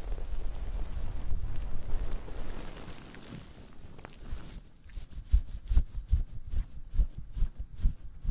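A soapy natural sea sponge squeezed and rubbed in lathered hands, giving wet squishing and rustling. The sound is a continuous rubbing for the first few seconds, then turns into a run of separate squeezes, about two or three a second.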